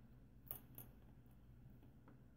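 Near silence with two faint clicks, about half a second and just under a second in, from a Squire SAL/40 padlock being turned over in the hand.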